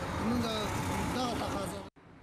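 A man talking in the open over a steady low rumble of vehicle noise; the sound cuts off abruptly near the end.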